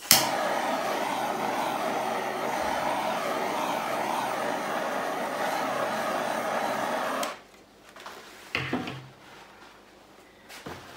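Small handheld gas torch lit with a sharp click and burning with a steady hiss for about seven seconds, then shut off suddenly, as it is passed over wet acrylic pour paint to open up cells. A short knock follows about a second later.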